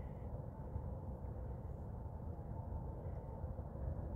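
Quiet, steady low rumble of outdoor background noise with no distinct events.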